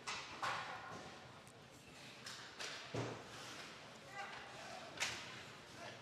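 Faint ice-rink game sounds: several short scrapes and knocks from skates, sticks and puck on the ice. A faint voice is heard about four seconds in.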